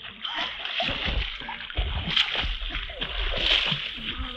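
Water splashing and sloshing as a swimmer in a life jacket kicks and strokes through shallow water, in an irregular run of splashes.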